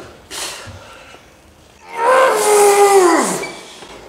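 A man's strained vocal groan of effort while curling a heavy loaded EZ bar on a preacher bench. It lasts about a second and a half from about two seconds in, and slides down in pitch as it ends. It is preceded by a short sharp breath just after the start.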